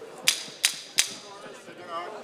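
Three sharp, ringing strikes about a third of a second apart in the first second, like a hard object rapped on metal, followed by faint voices in the arena.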